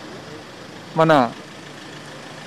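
A pause in a man's speech at an outdoor press microphone cluster, with one short spoken word about a second in, over a steady low background hiss of outdoor noise.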